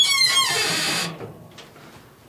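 A plastic timing belt cover scraping and rustling against engine parts as it is shifted by hand, a noisy scrape with a faint squeak lasting about a second before fading away.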